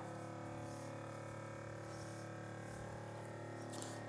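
Steady electric hum of a chamber vacuum sealer's pump running while it draws the vacuum, with several even tones holding level throughout.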